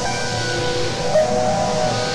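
Synthesizer played live from a keyboard, using the LMMS TripleOscillator 'Erazzor' preset: sustained chords and melody notes with rich overtones, with one brief accented note a little past the middle.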